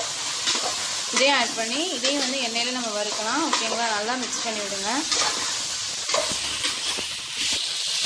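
Chopped brinjal, potato and onion sizzling in hot oil in a metal pot while a spoon stirs and scrapes them. From about one to five seconds in, a voice with a wavering pitch sounds over the frying.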